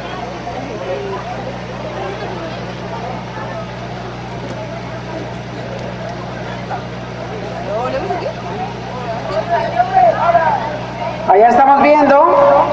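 Indistinct chatter from several voices over a steady low hum; the voices grow louder in the last few seconds and the hum cuts out shortly before the end.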